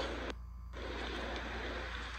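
Outdoor background noise: a steady low hum under an even hiss, with the hiss cutting out briefly about half a second in.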